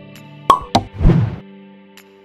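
Background music with steady held tones, broken by two sharp pop sound effects about half a second in, a quarter of a second apart, then a short, loud noisy burst just after a second in.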